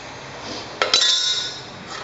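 A metal spoon strikes a stainless-steel bowl: a sharp clink a little under a second in, then a bright ringing that fades over about a second.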